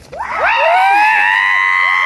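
Several people yelling together in one loud, long held shout that starts suddenly and rises in pitch at the start, with shorter cries breaking in over it.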